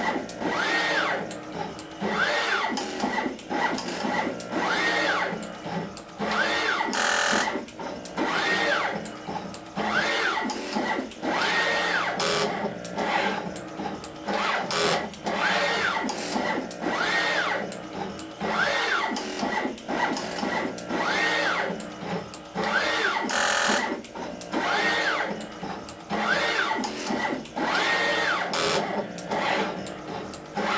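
TM245P desktop pick-and-place machine working through a placement job with both pick heads: the gantry's stepper motors whine in short rising-and-falling arcs, roughly one move a second, among rapid clicks from the heads.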